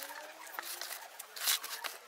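Faint gritty rustle of potting soil mixed with sand being added to a pot around a plant stem, with small scattered clicks and a brief louder rustle about one and a half seconds in.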